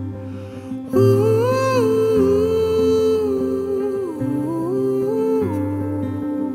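Slow acoustic song intro: a wordless hummed melody of long, gliding notes over acoustic guitar chords and deep held bass notes that change every second or two.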